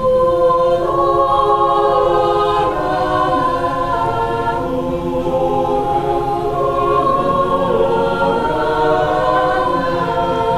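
Mixed choir singing a cappella, holding sustained chords that shift slowly from one to the next.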